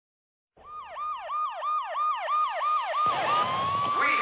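Police siren sound effect opening a heavy metal track: a fast yelp of falling sweeps, about three a second, starting half a second in. Around three seconds in it changes to a steady held wail over a rushing noise.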